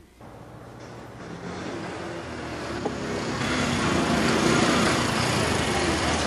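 Motorcycle engine growing louder as it approaches, loudest about four to five seconds in.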